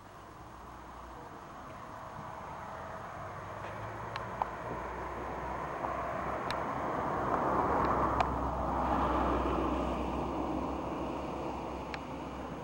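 A road vehicle passing on the mountain road, its engine and tyre rumble swelling slowly to a peak near the end and then fading, with a few faint clicks.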